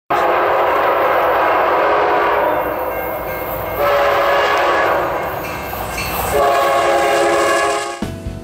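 A locomotive air horn sounding three long, chord-like blasts, the middle one shortest, over a rumble of train noise. It cuts off just before the end.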